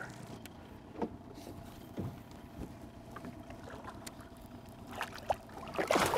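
Faint water sounds around an aluminium fishing boat, with a few light knocks against the hull. A splash starts right at the end as a big northern pike is let back into the water.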